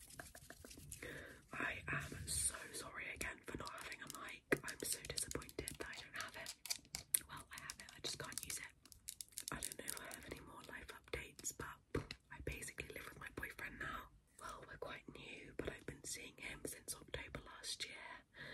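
Whispering close to the microphone, broken by many small sharp taps and clicks of long fingernails on a clear plastic pump bottle.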